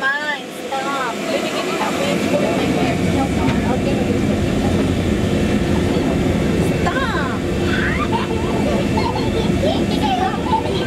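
Many passengers' voices chattering and exclaiming over one another inside a tourist submarine's cabin, over a steady low hum of the sub's machinery.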